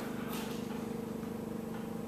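A steady hum at one constant pitch, with a faint fast flutter in its loudness, from a running machine such as a fan or motor.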